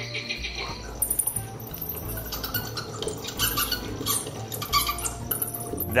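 Recorded wildlife sound effects played through computer speakers: frog sounds at first, then high, squeaky bat calls in scattered bursts from about a second in. Background music plays underneath.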